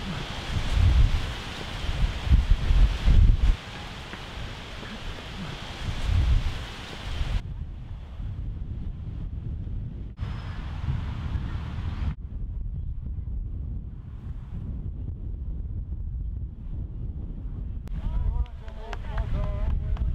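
Wind buffeting the microphone in gusts, heaviest in the first few seconds, then cutting to a quieter outdoor background. Faint voices come in near the end.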